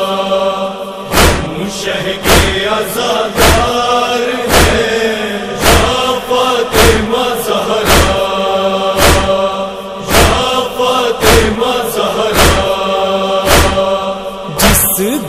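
Chorus of voices chanting a sustained, wordless drone of a nauha lament. From about a second in, a heavy thump lands about once a second, with lighter ones between, in the rhythm of matam chest-beating.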